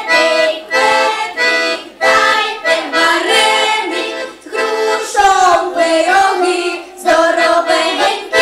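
Piano accordion playing a Ukrainian folk song while a group of young girls sing along.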